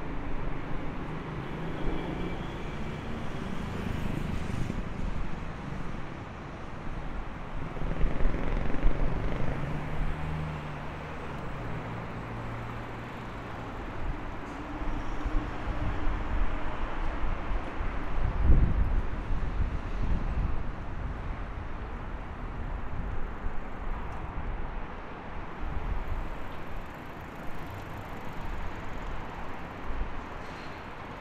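Road traffic on a busy city street: vehicles passing with engine sounds that swell and fade, and a louder low rumble a little past the middle.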